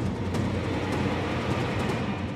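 Dramatic TV background score: a sustained low, rumbling swell with a few faint drum hits.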